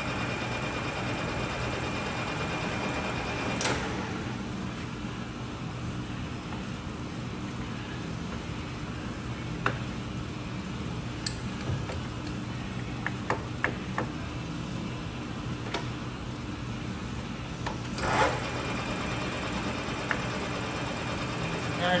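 Clausing Colchester 15-inch gap-bed lathe running under power, its spindle and geared headstock giving a steady hum. Scattered sharp clicks and clunks come as the carriage handwheel and feed levers are worked, with a louder clunk about 18 seconds in.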